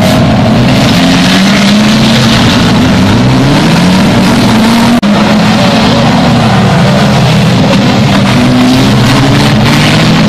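A pack of banger-racing saloon cars running hard around a short oval, several engines overlapping, their pitches rising and falling as drivers accelerate and lift for the bends. Very loud throughout, with a momentary break about halfway through.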